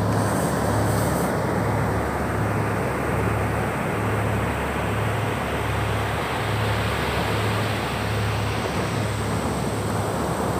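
Small waves breaking and washing up a sandy beach: a steady rushing noise. Under it runs a low throbbing hum that pulses about twice a second.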